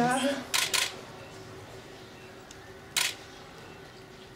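A camera shutter clicking twice in quick succession just under a second in, and once more about three seconds in, over a faint steady background hum.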